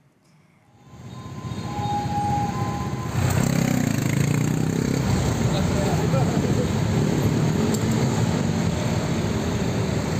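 Steady traffic noise of a busy city road: engines and tyres of passing cars and motorcycles. It fades in over the first couple of seconds and grows louder about three seconds in.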